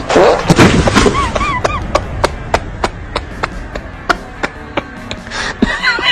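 Karate board-breaking strike: a loud whack of the blow against stacked wooden boards right at the start. It is followed by a run of evenly spaced sharp clicks, about three a second.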